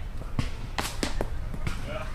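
A handful of sharp, short knocks and clicks at irregular intervals, the cluster loudest about a second in, over a faint outdoor background.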